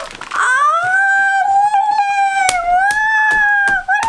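A pit bull mix dog giving one long, drawn-out whining howl, a high held note that wavers slightly in pitch and lasts about three and a half seconds.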